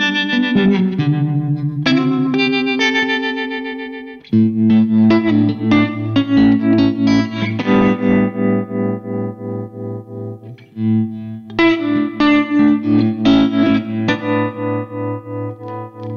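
Electric guitar chords played through a Surfy Industries Surfytrem tremolo pedal, cabinet-simulated and with added reverb. The sustained chords pulse in volume about twice a second. Partway through, the pedal is switched from its Brownface mode to its Blackface mode.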